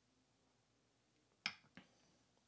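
A stemmed beer glass set down on a coaster: a short knock about one and a half seconds in, then a smaller second one, otherwise near silence.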